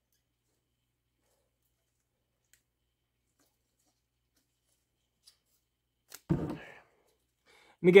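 Near silence for about six seconds, then one short sound a little past six seconds in; a man starts speaking at the very end.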